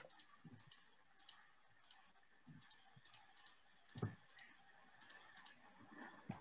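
Faint, irregular computer mouse clicks while the meeting settings are checked, with one soft thump about four seconds in.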